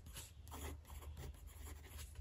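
Faint scratching of a TWSBI Diamond 580 fountain pen's very wet medium steel nib writing on paper in short strokes.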